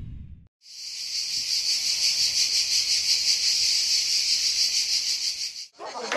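Cicadas buzzing in a steady, high chorus with a fine fast pulse. It starts abruptly about a second in and cuts off just before the end.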